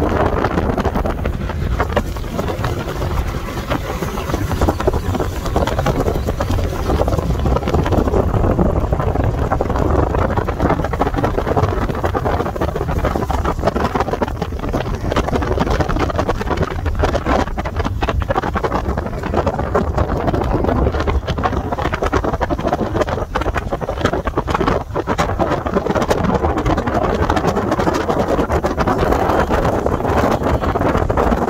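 Yamaha 50 hp outboard motor pushing a small fibreglass boat at speed, running steadily, mixed with wind buffeting the microphone and water rushing past the hull.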